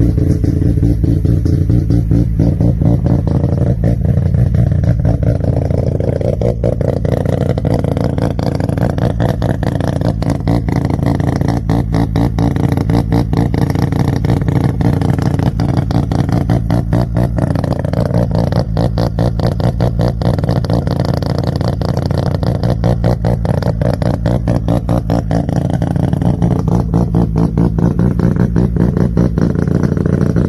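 Mazda RX-7 FD's twin-turbo two-rotor rotary engine running with a rapid, uneven pulsing, its revs swelling and easing back a few times.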